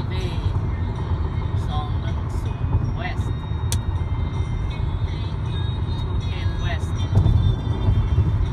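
Steady road and engine rumble inside a moving car's cabin at freeway speed, with a faint voice heard now and then over it.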